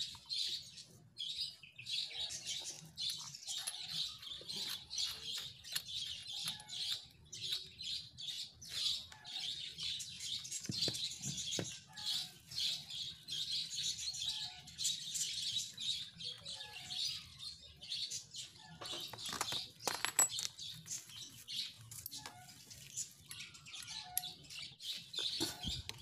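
Many small birds chirping continuously in the background, with a few faint knocks of handling, one near the middle and another a little over two-thirds of the way through.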